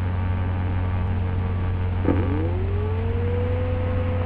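Steady low electrical hum with hiss. About halfway through comes a click, then a whine that rises in pitch and levels off into a steady note.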